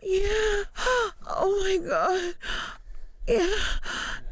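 A woman's breathy, high-pitched vocal moans and gasps, about five short ones, each held briefly and then bending in pitch, with a short pause near the three-second mark.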